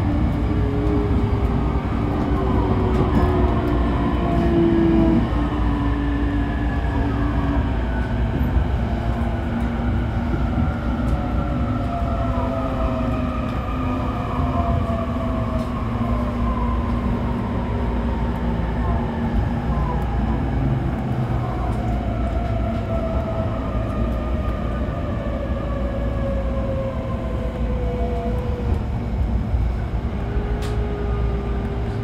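Interior running noise of a JR E531-series electric train braking to a stop. The traction motors whine in several tones that fall steadily in pitch as the train slows from about 60 km/h to a standstill, over a steady rumble of wheels on rail.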